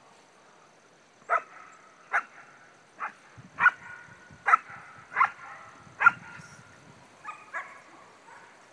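A dog barking repeatedly: about nine sharp barks, a little under a second apart, the loudest near the end.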